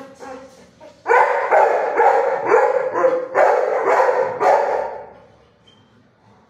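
Dogs barking in a run of repeated barks, starting about a second in and dying away about a second before the end.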